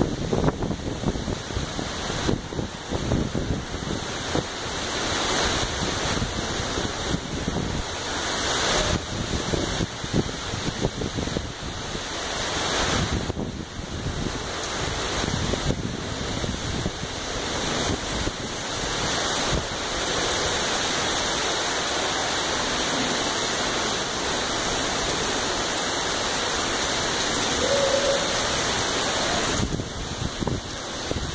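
Heavy thunderstorm downpour, a dense steady rush of rain, with wind gusting across the microphone in the first half before the sound settles to a steadier roar.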